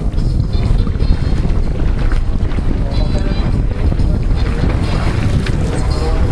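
Wind buffeting the microphone over pool water lapping at the edge, a steady rumbling noise.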